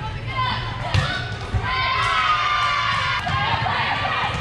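Volleyball being struck: a couple of sharp ball contacts about a second in, echoing in a large gym hall, over players' voices calling out.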